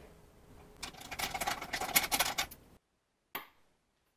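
A quick run of light metallic clicks and rattles as a small aluminum AN hose end is handled against a valve cover fitting. The clicks cut off suddenly, followed by one short click.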